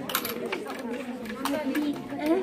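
Background chatter of several children's voices, with a few short sharp clicks over it.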